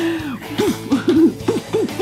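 A person making a run of about six short hooting vocal sounds, each rising and falling in pitch, over background music.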